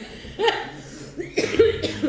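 A woman laughing and coughing: a sudden loud cough about half a second in, then two more in quick succession in the second half, with laughing sounds between them.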